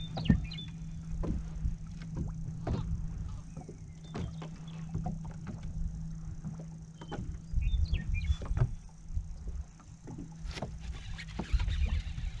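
Steady low hum of a bow-mounted electric trolling motor, with scattered small knocks and splashes of water against the boat's hull.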